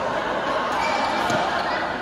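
Busy badminton hall: a steady din of many people talking, with a few sharp racket-on-shuttlecock hits from the surrounding courts ringing in the large hall.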